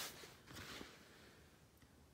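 Near silence, with a faint rustle and a light click or two of hands handling the keyboard's aluminium battery tube about half a second in.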